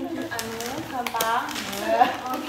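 Women's voices talking, untranscribed, with a few short sharp clicks about halfway through.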